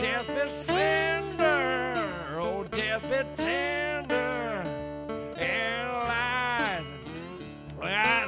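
A man's voice singing long, gliding notes over acoustic guitar in a slow dark folk blues song.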